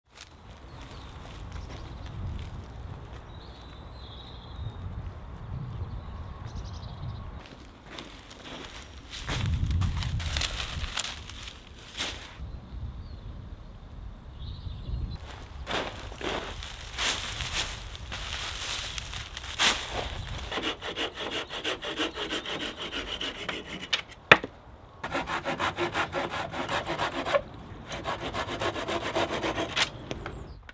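Bundles of dry water reed rustling and scraping as they are handled and dropped, with a run of short knocks and one loud sharp crack near the end, then a fast rasping rub.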